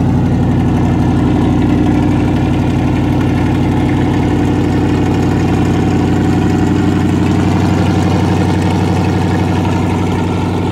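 1981 Chevrolet K10 4x4 pickup's engine idling steadily, heard from the rear of the truck.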